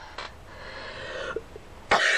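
A woman breathes out audibly, then breaks into a sharp cough near the end.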